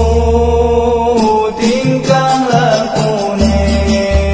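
Singing of a Javanese-language sholawat in a chant-like melody with musical accompaniment, the voice holding long notes.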